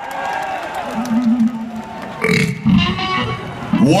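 A man's voice through a stage PA system, making low, wavering vocal noises rather than words, with a louder, rougher burst midway and a rising vocal glide near the end.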